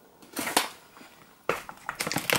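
A plastic protein-powder pouch being handled on a kitchen worktop: a brief rustle, then a sharp knock about one and a half seconds in.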